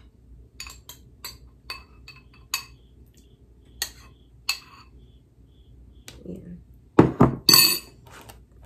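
Metal spoon clinking against a ceramic mixing bowl while something is stirred, a light clink about every half second. Near the end, a quick run of much louder knocks.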